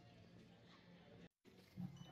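Near silence: faint indoor room tone, cut off completely for a moment just past a second in, with a short low sound near the end.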